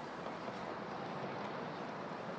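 Faint, steady outdoor ambience, an even hiss with no distinct sound in it.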